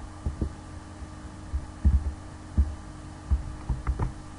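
Irregular low thuds, about eight in four seconds, from a computer mouse and keyboard being worked on the desk near the microphone, over a steady electrical hum.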